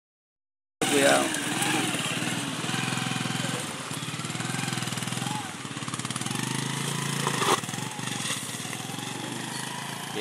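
Small motorcycle engine running at low speed as the bike passes close and rides off over a rough, broken bridge approach, with a short sharp knock about seven and a half seconds in.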